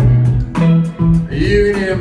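Live band with electric guitars and bass playing a country-bluegrass number, an instrumental bar leading into the next verse; a man's singing voice comes in near the end.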